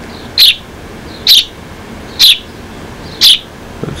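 A young hand-raised sparrow chirping: four short, high chirps about a second apart. The family takes its calling as asking to be fed.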